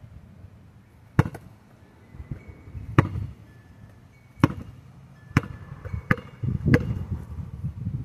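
A basketball bounced by hand on a dirt-and-gravel driveway: about seven sharp single smacks at uneven intervals, a second or so apart.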